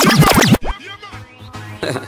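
DJ scratching a record: quick back-and-forth pitch sweeps for about half a second, cutting off abruptly into a much quieter stretch of music, a transition between two tracks of the mix.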